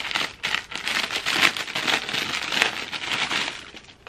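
Plastic packaging crinkling and crackling as it is handled and opened, dying away shortly before the end.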